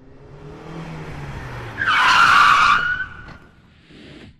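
Intro sound effect of a car engine running up, then a loud tyre screech about two seconds in that fades by three seconds.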